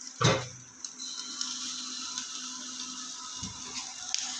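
Batter sizzling in hot oil in a non-stick frying pan: a steady soft sizzle that starts about a second in, as a handful of pitha batter is laid in the pan. A brief voice sound comes just before it.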